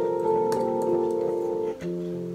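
Casio Privia PX-S1000 digital piano playing its electric piano voice: held chords, moving to a new chord with a lower bass note near the end.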